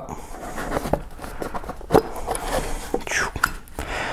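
Lid of a rigid cardboard box being worked off by hand: soft scraping and small clicks and taps of cardboard under the fingers.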